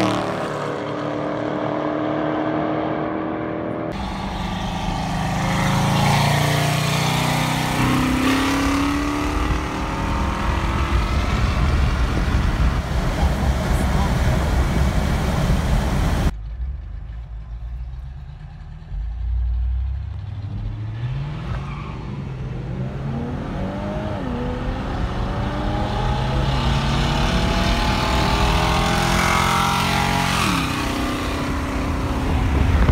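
Car engines racing hard and passing by, one pass-by dropping in pitch right at the start. Later, engines revving up and down in rising and falling sweeps, heard from inside a moving car.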